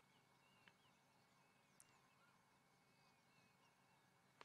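Near silence: faint bush ambience with a few faint, short bird chirps.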